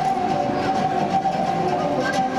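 Moldavian Hungarian folk dance music played live: a long wooden flute holds a high note over a plucked short-necked lute and a large double-headed drum beating a steady rhythm.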